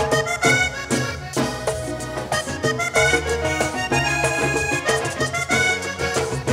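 Vallenato button accordion playing a fast instrumental passage of quick melodic runs over the band's bass and percussion.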